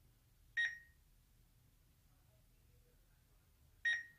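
Two short, high electronic beeps about three seconds apart from an eLinkSmart pan-tilt Wi-Fi security camera that has just been reset and is waiting to be set up.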